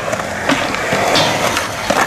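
Skateboard wheels rolling over smooth concrete, a steady gritty rumble, broken by a few sharp clacks of the board. The loudest clack comes near the end.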